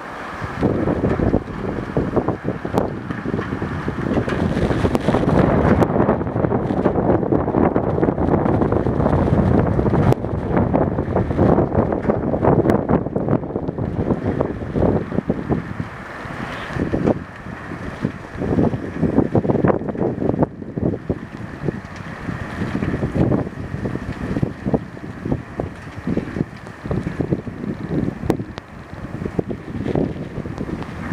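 Strong storm wind gusting and buffeting the microphone in a loud, rumbling rush that swells and eases, heaviest in the first half.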